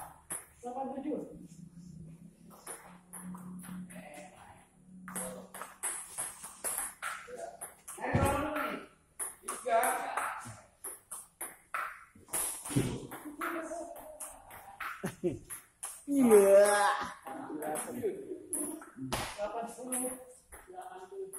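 Table tennis rally: the ball clicking sharply off rubber paddles and the table again and again. Men's voices call out in between, loudest near the end.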